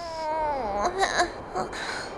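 A small cartoon chick's voice whimpering and crying: one long whine sliding downward, then several short sobbing cries.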